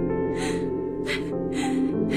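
Slow background music of held notes, with three short, shaky breaths from a woman acting out crying: about half a second in, at about a second, and near the end.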